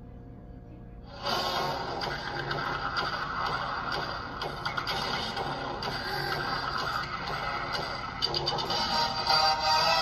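Music comes in abruptly about a second in, after a quieter moment, and plays on steadily.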